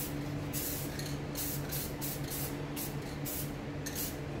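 Aerosol spray paint can hissing in a string of short bursts as paint is sprayed onto a board. A steady low hum runs underneath.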